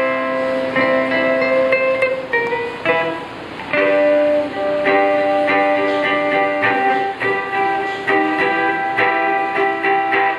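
Guitar playing chords, the notes held and ringing, with a short dip in loudness about three seconds in.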